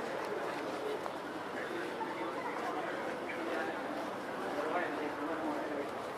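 Indistinct chatter of several people talking, a continuous mix of voices with no clear words.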